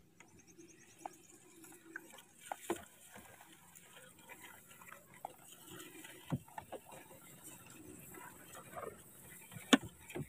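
Quiet open-air background with a few faint, scattered clicks and knocks, the sharpest one just before the end.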